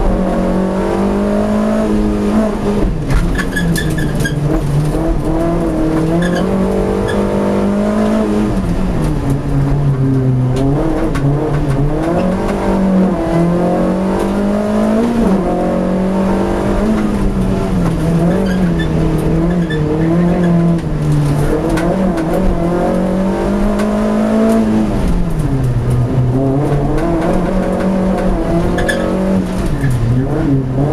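Ex-Cup VW Lupo race car's four-cylinder engine, heard from inside the cabin, driven hard through a slalom. Its note climbs under acceleration and falls back again and again as the driver lifts and shifts, with a few deeper drops in revs.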